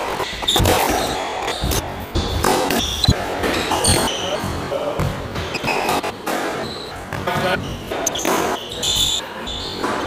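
Squash rally: the ball cracks off rackets and court walls at irregular intervals, with short high squeaks of shoes on the wooden court floor, over electronic background music.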